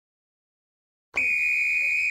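Silence, then about a second in a steady high-pitched beep-like tone starts and holds without wavering for about a second.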